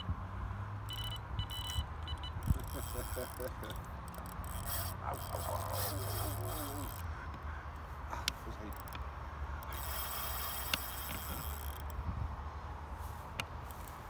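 Steady low rumble of road traffic, with faint voices in the background about four to six seconds in and a few light knocks.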